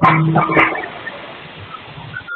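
An animal barking twice in quick succession near the start.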